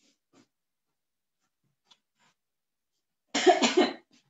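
A person gives a short, loud cough close to the microphone near the end, after near silence broken only by a few faint clicks.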